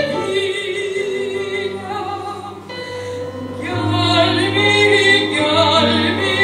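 Classically trained soprano singing with wide vibrato over electric keyboard accompaniment. The voice thins out about halfway through, then comes back louder on held notes about four seconds in.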